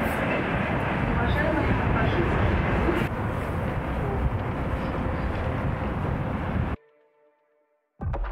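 Steady outdoor background noise, a broad rumble and hiss, that cuts off to near silence about a second before the end.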